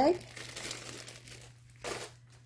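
Plastic zip-top bag full of wooden Scrabble tiles crinkling as it is handled and moved away. The rustle fades over the first second or so, and a brief rustle follows near the end.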